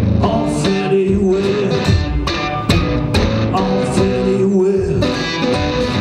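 Electric guitar played live through an amplifier: picked notes and chords ringing out in an instrumental passage, each new strike coming roughly every half second to second.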